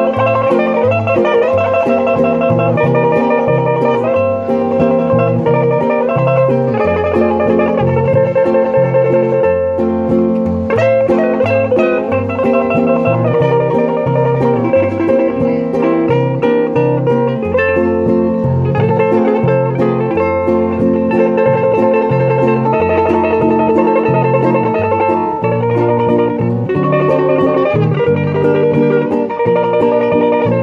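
Acoustic guitars playing an instrumental passage: a nylon-string guitar accompaniment with a stepping bass line under a plucked lead melody.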